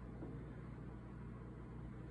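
Faint room tone: a low steady hum under a soft hiss, with no distinct event.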